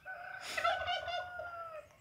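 A rooster crowing once, faint: one long held call that sags slightly in pitch at the end.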